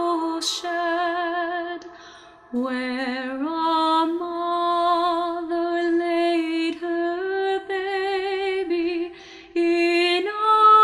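A solo female voice singing unaccompanied: slow phrases of long held notes with vibrato, with a brief pause about two seconds in and breaths between phrases.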